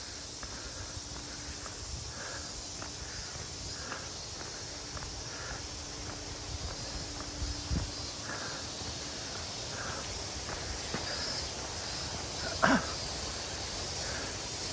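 Footsteps walking steadily on a paved path under a steady high buzz of summer insects. Near the end there is one short, louder call.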